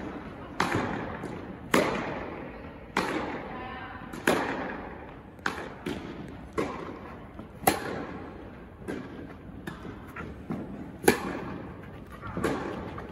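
Tennis ball being struck by rackets and bouncing on an indoor hard court during a rally, about one sharp pop a second, each echoing through the hall.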